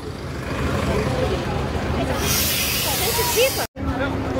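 Diesel bus engine idling with a steady low hum and voices of a crowd around it. About two seconds in comes a loud hiss of compressed air from the bus's pneumatics, lasting over a second. The sound drops out for a moment near the end.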